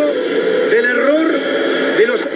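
A man speaking Spanish without pause: a football commentator's narration.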